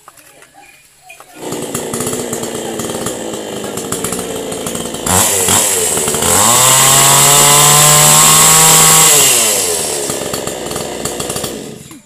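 A damaged, scorched petrol chainsaw running again after repair: it starts about a second in and idles, is revved up to high speed and held for about three seconds, then drops back to idle and stops just before the end.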